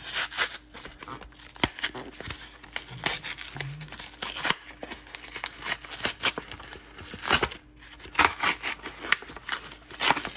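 Cardboard backing of a Pokémon card blister pack being torn and peeled away from its plastic shell, in irregular rips with crinkling and rustling as the booster packs are handled.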